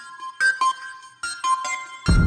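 Software keyboard sounds played live from a Studiologic SL88 Studio MIDI keyboard: a quick run of short, bright pitched notes, one after another with clear attacks.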